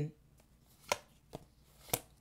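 Three short, sharp taps on a hard surface, about half a second apart, starting about a second in, over a quiet room.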